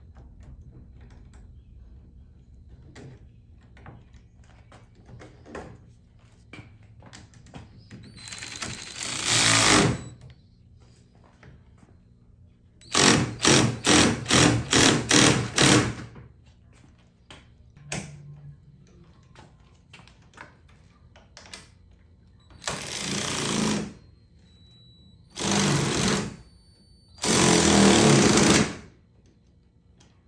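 KIMO cordless electric ratchet tightening a bolt in several bursts of one to three seconds, with a run of about seven quick trigger pulses in the middle. Faint clicks of tool handling come between the bursts.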